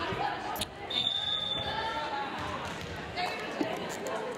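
Referee's whistle, one short steady blast about a second in, over spectators' chatter echoing in a gym hall, with a few sharp thuds of a volleyball.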